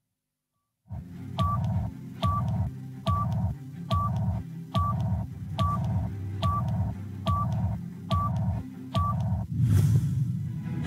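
Electronic countdown beeps of a TV show intro: a short two-tone beep about every 0.85 s, ten in all, over a low pulsing bass. It starts after a second of silence, and a rush of noise comes just before the end.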